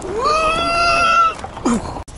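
A high-pitched, drawn-out vocal cry from a person, rising at the start and held for about a second, then a short falling cry near the end.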